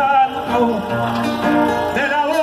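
A payador, a male folk singer, singing to his own acoustic guitar, the voice held on long notes over plucked strings.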